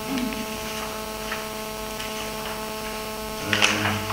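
Steady electrical mains hum holding several even tones, with faint small noises and a brief voiced sound near the end.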